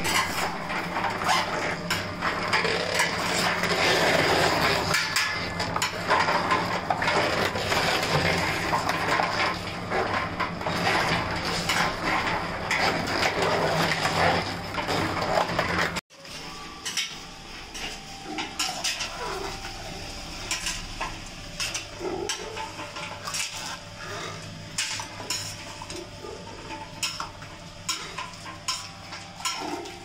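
Wood-pressed ghani oil mill grinding coconut pieces in its steel bowl: a steady machine hum under dense crackling and clinking. About halfway through, the level drops suddenly, leaving quieter scattered clicks and knocks over the hum.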